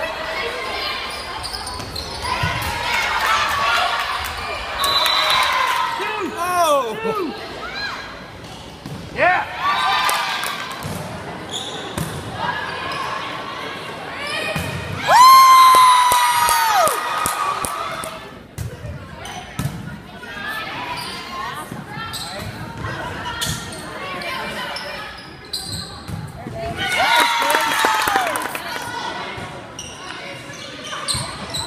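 Volleyball rallies in a gymnasium: the ball thudding off players' arms and hands again and again, with players' and spectators' voices and shouts. A long held shout about halfway through is the loudest sound.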